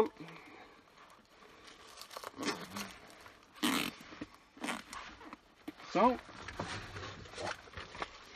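A firefighter's breathing-apparatus face mask and its head-harness straps rustle and scrape in short bursts as the mask is pulled on and the straps tightened. The loudest burst comes about three and a half seconds in.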